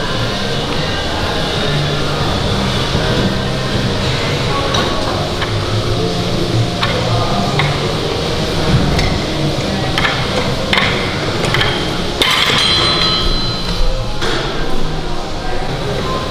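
Steel weight plates on a loaded T-bar row barbell clanking as it is pulled up and lowered for repeated reps, about one clank every second or two. Background music plays throughout.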